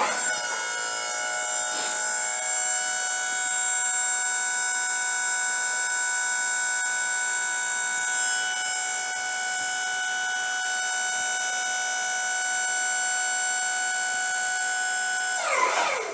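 Wood-Mizer LT40 sawmill's electric hydraulic pump running under load as the loading arms are raised: a steady whine with several tones. It starts suddenly and winds down in pitch just before the end as the arms reach the top.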